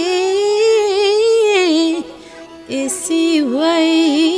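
A single voice singing a Limbu folk song in a wavering, ornamented melodic line. It breaks off about two seconds in for a breath, then picks up again with a few short notes and carries on.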